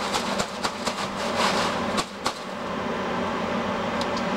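Steady machine hum, with several light knocks and clicks in the first two seconds and a brief rustle about a second and a half in.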